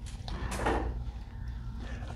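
Knife and fork cutting flaky spanakopita on a ceramic plate, with one sharp clink of metal on the plate about half a second in, over a low steady hum.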